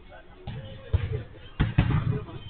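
A football being kicked and bounced on artificial turf: about four dull, sudden thumps, two of them close together near the end.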